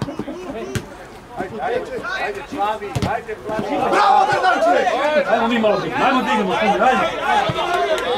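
Many overlapping male voices of football players and spectators shouting and calling, louder and busier from about halfway through, with two sharp knocks in the first half.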